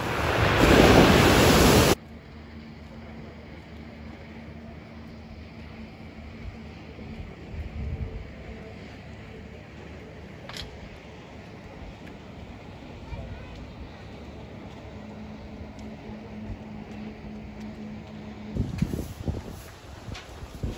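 Sea waves breaking and washing over a pebble beach, with wind on the microphone. About two seconds in they cut off abruptly to a much quieter outdoor background with a faint low steady hum and a single click midway, and louder irregular sounds return near the end.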